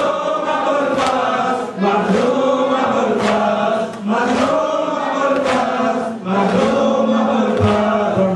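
Many men's voices chanting a Shia mourning lament (latmiya) together in long sung phrases, with a regular slap about once a second from chest-beating (matam) keeping time.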